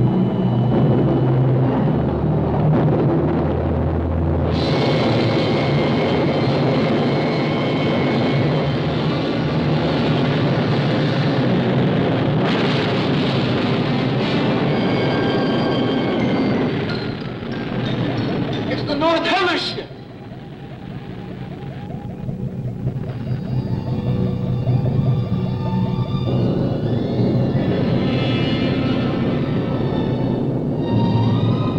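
Rocket blast-off sound effect from a 1950s science-fiction film soundtrack: a steady rushing roar of rocket exhaust with dramatic music over it. The roar breaks off about twenty seconds in after a wavering rising tone, followed by a warbling electronic tone and music.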